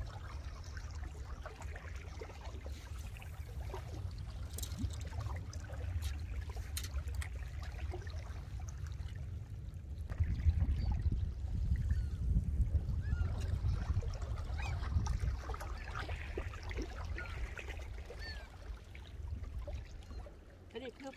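Small waves lapping against a rocky shoreline, under a low rumble of wind on the microphone that grows louder about halfway through.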